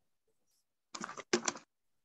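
Two short bursts of clicking clatter about a second in, of the kind made by typing on a computer keyboard.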